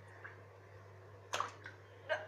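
A hand splashing in shallow bath water: one sharp splash about one and a half seconds in, a softer one just after, with small drips around them.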